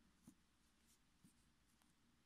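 Near silence: quiet room tone with two faint soft ticks of a crochet hook and yarn being handled.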